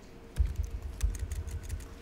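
Typing on a computer keyboard: a quick, irregular run of key clicks starting about half a second in.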